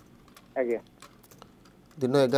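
A few light, scattered clicks of keys being typed on a keyboard, with one short spoken syllable about half a second in.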